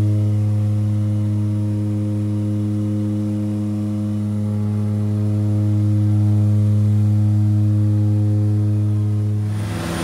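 Twin turboprop engines and propellers of a de Havilland DHC-6-300 Twin Otter (Pratt & Whitney PT6A) heard inside the cabin during the climb just after lift-off: a loud, steady propeller drone with a strong low hum. Near the end the drone's pitch shifts and a rushing noise comes up.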